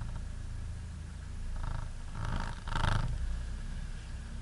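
Off-road 4x4 engine running with a steady low rumble, heard from inside the cab. About two to three seconds in, three short, louder surges come through, the last one the loudest.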